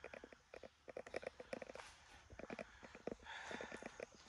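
Faint footsteps walking through mud on a tunnel floor: an irregular run of soft steps and scuffs, in an echoey tunnel.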